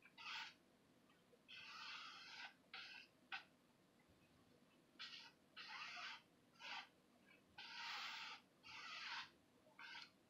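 Faint swishing scrapes as a tool is dragged across a canvas, spreading acrylic paint in repeated back-and-forth strokes. The strokes are about one or two a second, some short and some lasting about a second.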